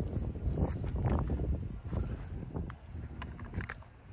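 Footsteps shuffling across grass and mulch with a low rumble of wind or handling noise, dying down toward the end, and a few light clicks.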